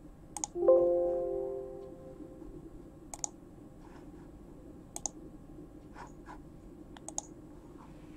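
Computer mouse clicking several times, some clicks in quick pairs. Just under a second in, a single electronic chime sounds, the loudest thing here, and fades out over about a second and a half.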